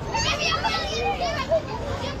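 Background chatter of children's voices, fainter than the close speech just before it.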